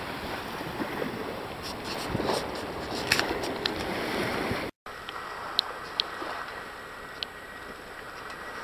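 Small waves washing up a sandy beach, a steady hiss of surf. The sound drops out for an instant about halfway, and a few short sharp clicks are heard in the second half.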